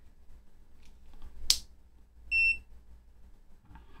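FNIRSI LC1020E LCR meter's buzzer giving a single short high-pitched beep as the resistor clipped into its test leads is measured and sorted within tolerance. A sharp click comes about a second before the beep.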